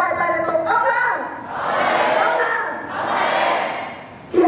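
An audience shouting together twice, two loud swells of massed voices, each a little over a second long, after a woman's amplified voice in the first second.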